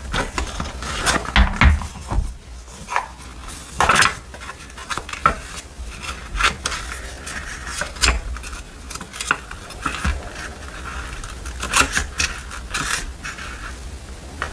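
Close-up handling of a crocodile-embossed wallet and a small paper notebook. Sharp little clicks and taps come every second or so, with paper rustling and pages flicking between them.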